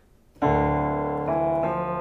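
Keyboard with a piano sound playing a short melody as one transposition of the same tune into another key. A few sustained notes start about half a second in and ring into one another.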